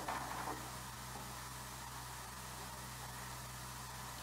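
Steady hiss with a low mains-like hum from an old 16mm film soundtrack, with a brief faint sound right at the start.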